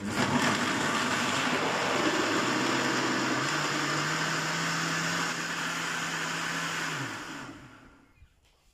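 Countertop blender puréeing carrot chunks in water. The motor starts abruptly, and its hum rises in pitch about halfway through as the carrots break down. Near the end it is switched off and winds down.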